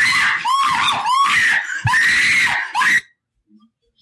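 A girl screaming in panic: a run of shrill screams that rise and fall in pitch, breaking off about three seconds in. A flame has just flared up at her from candles beside her.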